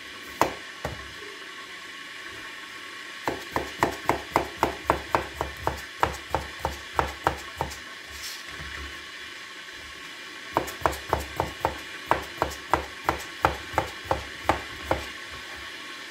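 Chef's knife slicing a cucumber into rounds on a plastic cutting board: two runs of quick, even chops, about three a second, each stroke ending in a sharp tap of the blade on the board.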